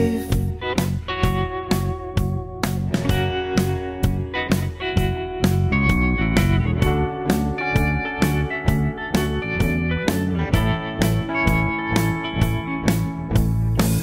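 Instrumental break in an Americana rock song: electric guitar lines over a band, with drums hitting a steady beat about three times a second.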